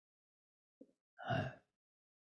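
A man's short sigh-like vocal sound a little over a second in, after a faint brief breath sound; otherwise silence.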